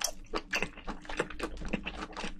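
Close-miked chewing of spicy braised seafood and bean sprouts: a quick, irregular run of wet crunching clicks, several a second.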